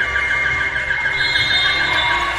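A high, warbling whistle-like tone, held steady in pitch while it wavers about eight times a second, with a second, higher tone joining about a second in.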